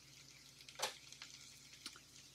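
Faint sizzling of corn kernels and garlic sautéing in a pan on a portable gas burner, with scattered small crackles and one louder crackle just under a second in.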